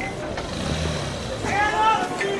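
Low, steady rumble of street traffic. About one and a half seconds in, a loud, high-pitched call with an arching pitch cuts in over it.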